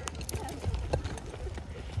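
A horse's hooves beating on arena dirt: a run of irregular knocks and thumps over a low rumble.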